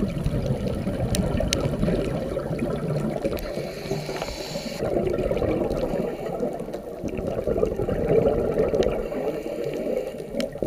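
Underwater sound picked up by a diving camera: a muffled, uneven low rush of water, with a few faint sharp clicks. A brighter hiss comes in around the middle and stops abruptly.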